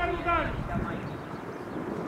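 Shouted calls from footballers on the pitch in about the first half second, then steady outdoor background noise.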